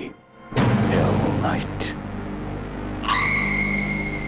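Trailer soundtrack: a sudden loud boom about half a second in, over music and a voice, then a held high musical tone comes in about three seconds in.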